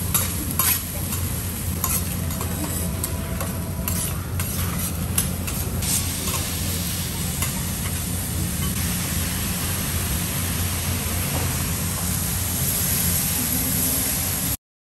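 Food sizzling on a steel hibachi flat-top griddle. Through the first half, a metal cleaver and spatula tap and scrape on the steel as the chef chops and turns fried rice. After that comes a steady sizzle as vegetables cook.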